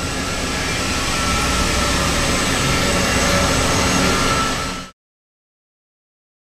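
Liquid butane rushing through a just-opened valve and lines of a closed-loop extractor: a steady hiss with a faint thin whistle that grows slightly louder, then cuts off abruptly about five seconds in.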